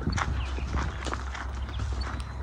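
Footsteps on a dry dirt field, a string of uneven soft knocks, over a steady low rumble of wind on the microphone.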